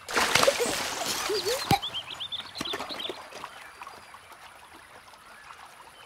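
A splash of water right at the start that settles over a second or two into gently running stream water, with birds chirping briefly about two to three seconds in.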